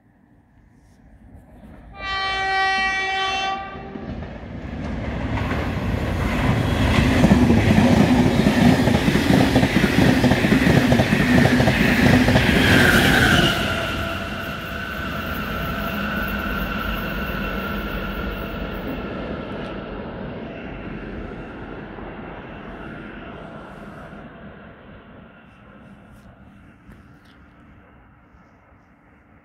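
An Irish Rail Mk4 intercity train hauled by a Class 201 diesel locomotive passes through the station at speed without stopping. It gives one short horn blast about two seconds in. Then its rumble and wheel-on-rail noise build up and stay loud for several seconds. About thirteen seconds in the sound drops sharply with a falling pitch as the end of the train passes, then fades slowly as it moves away.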